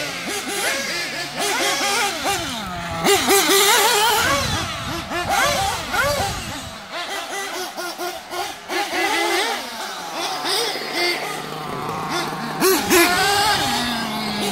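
Small nitro engines of 1/8-scale Kyosho MP9 RC buggies, revving and easing off as they race round the track. Their high-pitched whine rises and falls constantly.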